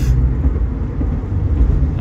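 Steady low rumble of road and engine noise inside the cab of a moving truck.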